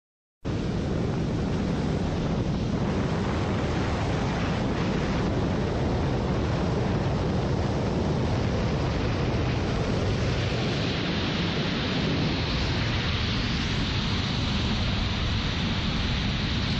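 Wind rushing over the microphone of a camera flying with a wingsuit pilot at speed, a steady noise that starts abruptly just under half a second in. From about ten seconds in it takes on a brighter hiss.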